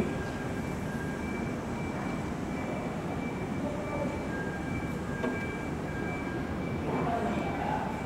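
Kintetsu electric train approaching the station: a steady rumble with faint high steady tones, growing a little louder near the end.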